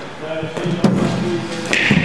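A cricket ball struck by the bat in indoor nets: a knock just under a second in, then a sharp crack near the end as the batsman swings through the shot, over faint background voices.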